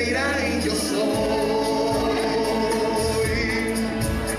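Church congregation singing a worship song together, many voices holding long, steady notes.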